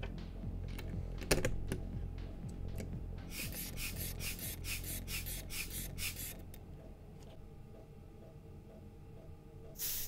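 A click about a second in as a brass clip-on air chuck goes onto a valve stem in a plastic bottle's cap. Then come about three seconds of quick, rhythmic puffs of air, about four a second, as a hand pump forces air through the hose to pressurise the bottle fuel tank. Faint background music throughout.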